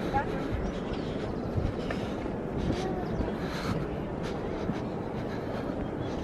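Steady outdoor background rumble with faint voices of people in the distance.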